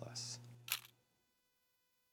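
The last words of a man's speech over a steady low hum, then the sound cuts off to silence about a second in.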